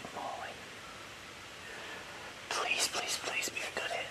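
A man whispering: a quick breathy run of hushed words in the second half.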